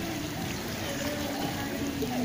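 Swimming-pool water splashing and lapping from swimmers' strokes, with indistinct voices in the background.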